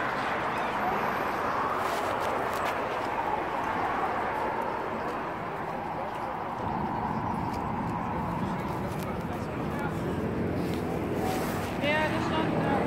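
Busy city street ambience on a bridge: steady traffic noise mixed with the indistinct chatter of passers-by.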